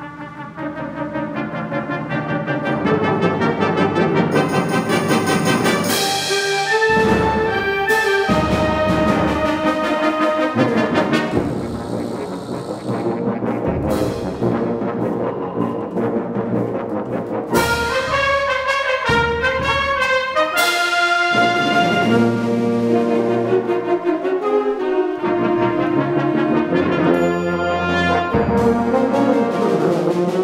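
Symphonic wind band playing, brass to the fore, entering suddenly and staying loud. Sharp accented strikes mark the music several times, with a brief quieter passage about twelve seconds in.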